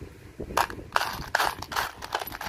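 Fingers sorting through a heap of loose steel screws and bolts, the metal pieces clinking and rattling against each other in a quick run of clicks that starts about half a second in.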